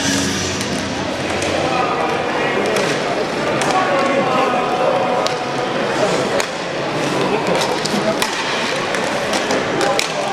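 Inline hockey game sound: an indistinct murmur of arena crowd and voices, with many sharp clicks and knocks of sticks and puck on the rink floor and boards.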